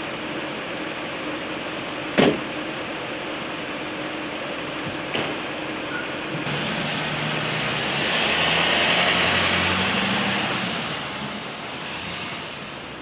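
A motor vehicle passing, its engine and tyres rising from about six seconds in to a peak around nine and fading toward the end. Before it, a steady background hiss with a sharp knock about two seconds in and a fainter one about five seconds in.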